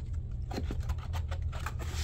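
Glass candle jars with metal lids being handled in a molded-pulp cardboard tray: a run of small scrapes and scratches of jars and hands rubbing against the cardboard.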